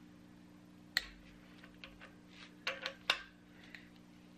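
Click-type torque wrench tightening a camshaft cap bolt in stages: a sharp click about a second in, then a quick run of clicks and knocks near three seconds as the wrench reaches its set torque and breaks over.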